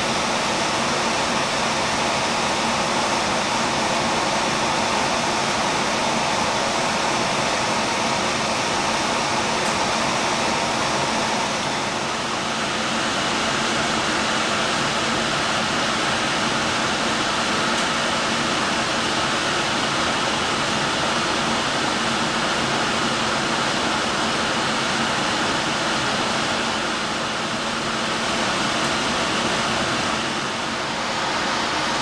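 Steady airflow noise of a biological safety cabinet's blower fan, its tone shifting slightly about twelve seconds in.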